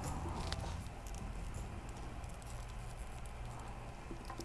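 Faint clicks and light handling noise of small plastic figure parts being held and pressed together by hand, over a low steady hum.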